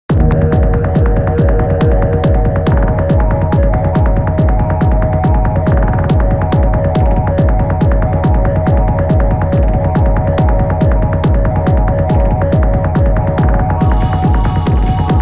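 Electronic background music with a fast, steady beat over held synth tones.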